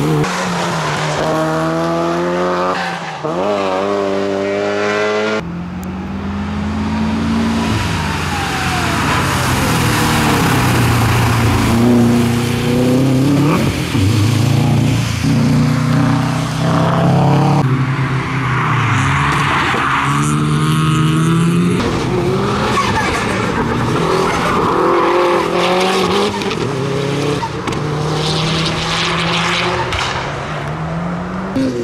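Turbocharged rally cars at full throttle on a tarmac circuit: first a Mitsubishi Lancer Evolution, then Subaru Impreza WRX STIs. The engines rise in pitch through the gears with drops at each shift and fall away on lifting off, over tyre noise in the corners. The sound changes abruptly a few times as one pass cuts to the next.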